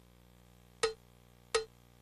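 Two sharp percussion strikes about 0.7 s apart, each with a short ringing tone, over a faint steady hum.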